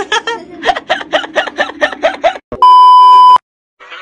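A voice, then about two and a half seconds in a loud, steady electronic bleep tone of the kind edited in to censor a word. It lasts under a second, cuts off suddenly, and is set off by short silences on either side.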